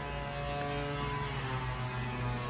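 A steady mechanical hum with several faint steady tones above it, a few of them sinking slightly in pitch near the end.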